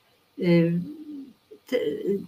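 A woman's voice: one drawn-out, steady-pitched hesitation sound, a held 'eee', about half a second in, trailing off, and then speech resumes near the end.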